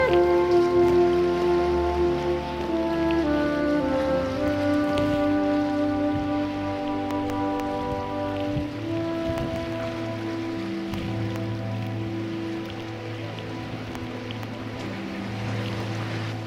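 Background music from a military band: slow, legato wind and brass lines with long held notes that change every few seconds.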